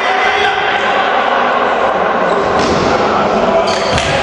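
Spectators' voices and shouting echoing in a sports hall just after a point, with a volleyball bouncing on the hard court floor and a thump near the end.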